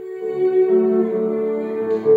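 Cello and piano playing a slow, lyrical classical piece. After a brief dip at the start, the cello holds a long note while piano chords come in underneath.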